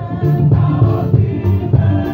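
Mixed choir of men and women singing a gospel song into microphones, with a steady beat ticking faintly above the voices.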